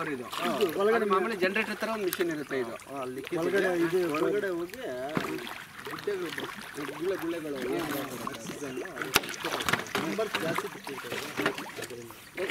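People talking over the splash of paddlewheel aerators churning pond water, with a sharp click about nine seconds in.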